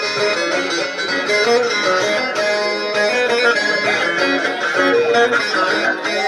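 Bağlama (saz), a plucked long-necked lute, playing a semah melody in an instrumental passage between sung verses, with no singing.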